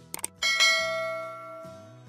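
Subscribe-button animation sound effect: a quick double click, then a bright bell chime that rings out and fades over about a second and a half, over soft background music.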